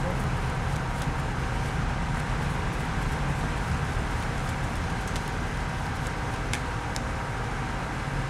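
Steady outdoor background noise, a low rumble with hiss, and a few faint clicks of a tarot deck being shuffled in the hands.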